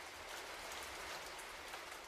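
Steady rain falling, a faint, even hiss of drops.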